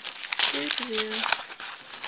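Paper gift wrap and the cellophane sleeve of a pencil pack crinkling as they are unwrapped by hand, with a brief murmur of voice about half a second in.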